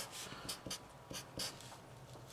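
Sharpie felt-tip marker writing on paper: a series of short, faint strokes as letters are drawn.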